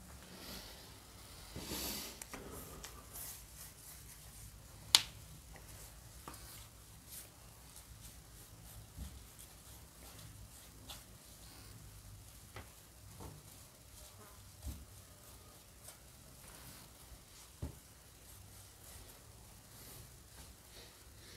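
Quiet sounds of a wooden door being painted by hand. There is a faint brush rustle near the start and scattered light clicks and knocks, with one sharp click about five seconds in.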